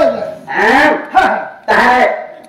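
Speech: a voice talking in two short phrases.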